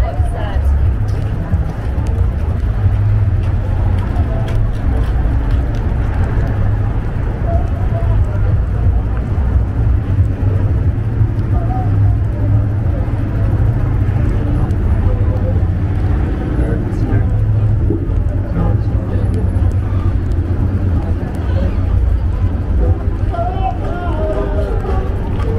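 Busy downtown street ambience: a steady low rumble of road traffic, with faint snatches of passers-by talking.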